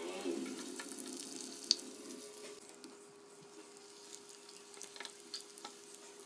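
Prawn cutlets shallow-frying in hot oil in a pan: a faint, even sizzle with scattered small crackles, growing quieter after the first couple of seconds.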